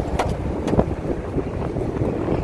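Steady low outdoor rumble picked up by a handheld phone microphone, with two brief knocks, one near the start and one under a second in.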